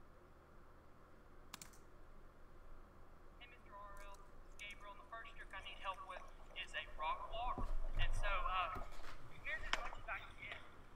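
Faint, indistinct voices that grow louder in the second half, with a low rumble underneath around eight seconds in. A single sharp click comes about a second and a half in.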